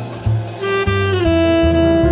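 Jazz quartet recording: a tenor saxophone holds long notes, sliding down to a lower held note about a second in, over a bass line and drums.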